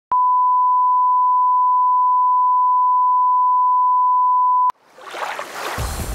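Steady 1 kHz reference test tone accompanying colour bars, cutting off suddenly after about four and a half seconds. A rushing, splashing whoosh of an animated intro then swells in, with a low pulse starting underneath near the end.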